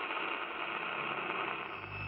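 A steady hiss, like radio static, with a low hum coming in near the end.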